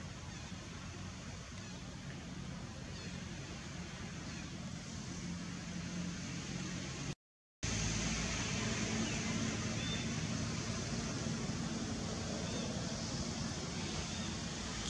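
Steady outdoor background noise with a low hum and a few faint high chirps. The sound drops out for about half a second about seven seconds in, then returns a little louder.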